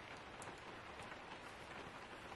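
Faint steady rain, with a few light ticks.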